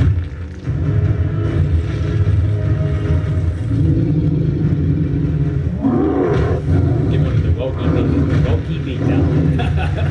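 Fight sound effects from an animated superhero battle: a deep continuous rumble, with a rising cry-like sound about six seconds in, followed by a run of rapid cracks and hits as debris flies.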